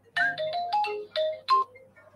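An electronic phone ringtone playing a short melody of about seven quick notes, stopping about a second and a half in.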